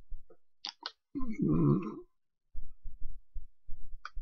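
Computer mouse scroll wheel clicking in a quick run of short ticks as a web page is scrolled, after a brief murmured vocal sound.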